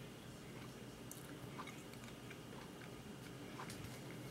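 Faint chewing by a person with closed mouth, with a few small clicks scattered through: a small red candy decoration from a strawberry cupcake being eaten.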